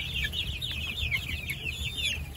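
A brood of young, half-feathered chicks peeping together: many short, high chirps overlapping, several a second.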